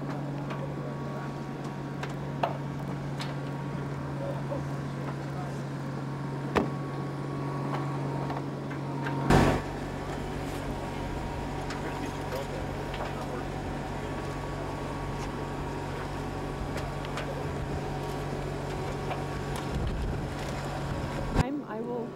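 A steady low machine hum, with a few sharp clicks and one loud knock about nine seconds in, made while the pilot climbs in through the spacecraft's hatch. The hum stops abruptly near the end.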